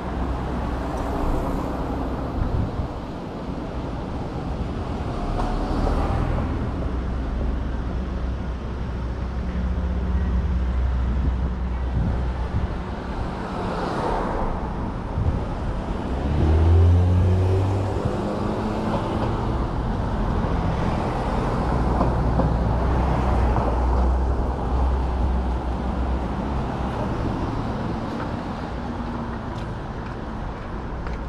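Street traffic: vehicle engines running steadily at low speed. About halfway through, one vehicle's engine gets louder and rises in pitch as it pulls away.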